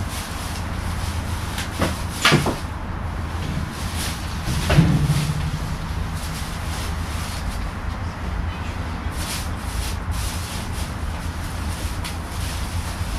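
Rubbish being rustled and shifted inside a large wheeled waste container, with two louder knocks a couple of seconds apart and scattered smaller clicks, over a steady low outdoor rumble.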